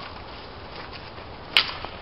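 A street hockey stick striking the ball on pavement: one sharp crack about one and a half seconds in, over low background noise.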